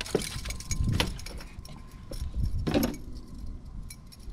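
Metallic clinking and jangling with low knocks, from fishing gear handled on an aluminum jon boat's deck, in short clusters near the start, about a second in, and just before three seconds.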